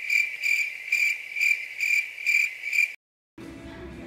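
Edited-in cricket chirping sound effect: a high, steady trill pulsing about twice a second, which starts abruptly and cuts off suddenly about three seconds in.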